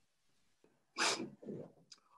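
A brief breathy vocal sound about a second in, a short hiss followed by a fainter low murmur, after a near-silent pause.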